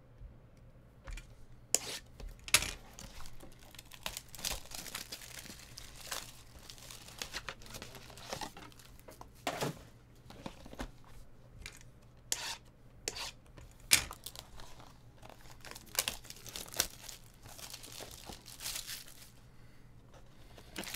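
Plastic shrink-wrap crinkling and tearing as it is worked off a sealed trading-card box, in irregular crackles with a few sharp louder snaps.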